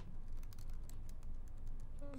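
Faint, rapid light clicking of computer keyboard keys, irregularly spaced.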